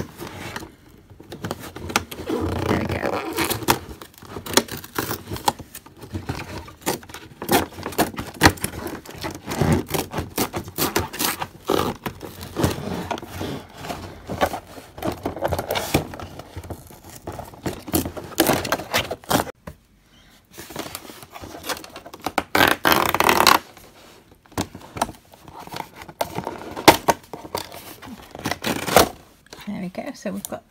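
Cardboard packaging being torn open by hand along a perforated edge and handled: irregular scraping, tearing and tapping of card, with a louder stretch about three-quarters of the way in.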